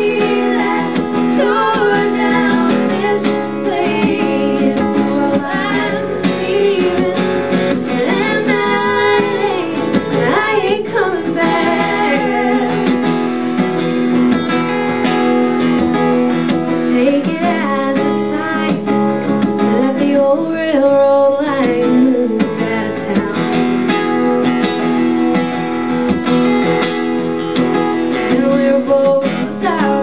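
A folk song played live: a steel-string acoustic guitar strummed steadily while a woman sings over it.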